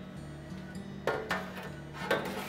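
Background music, with two quick metallic knocks a little past a second in as a stainless steel crumb tray is slid back into its slot beneath a pizza oven's deck.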